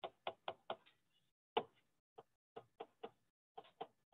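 Stylus tapping and clicking on a pen tablet while drawing: about a dozen short, faint taps, a quick run of four in the first second, the loudest about a second and a half in, then scattered taps.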